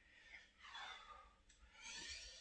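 Near silence with two faint breaths from a man exercising, one starting about half a second in and another near the end.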